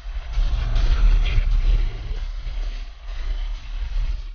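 Rigid inflatable boat running at speed over open water, mixed with rock music.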